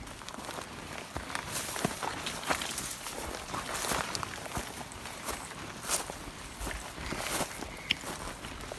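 Footsteps of a hiker walking on a dry dirt trail, with tall grass rustling against the legs as they pass, in a steady irregular crunch and swish.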